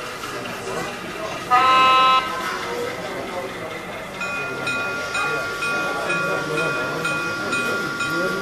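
O gauge model diesel switcher's onboard sound playing one short locomotive horn blast about one and a half seconds in, then a locomotive bell ringing steadily, about two strikes a second, from about halfway.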